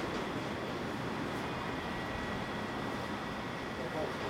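Steady noise of process machinery running: pumps and plant equipment, with a faint constant high whine.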